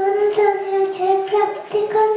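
A young girl singing into a microphone, holding long notes that step gently up and down in pitch.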